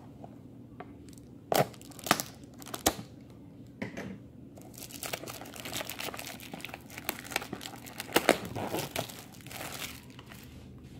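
Plastic shrink wrap being torn and pulled off a cardboard box, crinkling. A few sharp clicks come in the first three seconds, then steady crinkling from about halfway on.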